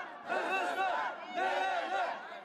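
A crowd of protesters shouting, several voices overlapping in raised calls that rise and fall in pitch.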